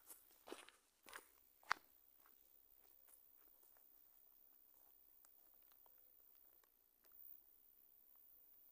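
Footsteps crunching on a dry, stony dirt path close to the microphone: four sharp crunches in the first two seconds, then only faint steps as the walker moves away over a near-silent background.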